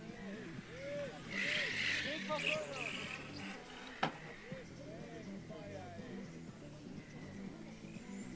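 Electric 1/10-scale front-wheel-drive RC touring cars racing, their motors whining up and down in pitch as they accelerate and brake through the corners. The whine is loudest and highest between about one and three seconds in. There is a single sharp click about four seconds in, over a steady low hum.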